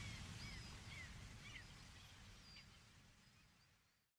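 Faint outdoor ambience: a low hiss with a few short, high bird chirps scattered through it, all fading out toward the end.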